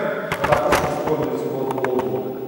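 A man's voice speaking in a hall, with a cluster of sharp clicks about half a second in and a few more near the end.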